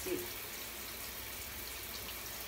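Shower water running steadily in a tiled stall, an even hiss with no break.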